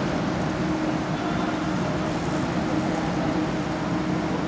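Steady background noise of a large indoor velodrome hall, an even rushing hum with a faint low tone through it and no distinct events.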